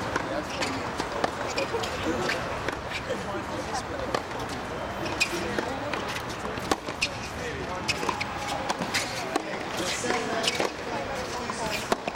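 Tennis rally on a hard court: sharp pops of rackets striking the ball and the ball bouncing, at irregular intervals about a second apart, over a steady murmur of background voices.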